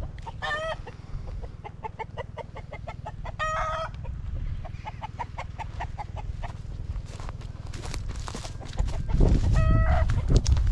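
Chickens clucking in a quick run of short notes, broken by a few longer, drawn-out calls near the start, in the middle and at the end. A low rumble runs underneath and grows much louder near the end.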